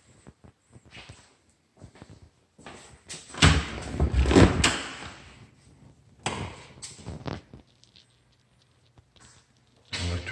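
An interior door being opened and closed, with handling noise: a loud run of knocks and rustling about three and a half to five seconds in, and a shorter one around six to seven seconds in.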